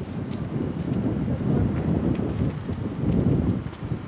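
Wind buffeting the camcorder's microphone: a loud, gusting low rumble that rises and falls.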